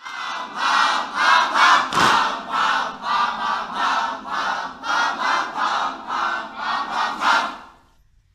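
A group of young voices chanting in unison, in a steady rhythm of about two shouts a second, fading out near the end.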